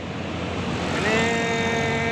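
A bus's multi-tone horn sounds one steady chord for just over a second, starting about a second in, over the engine and road noise of the passing bus and traffic.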